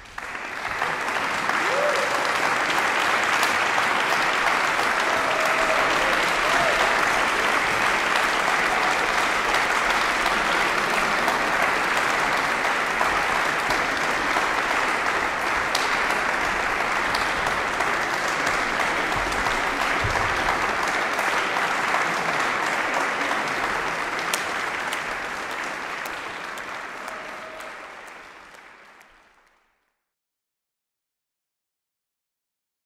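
Audience applauding, a dense steady clapping that starts suddenly and fades out over the last few seconds.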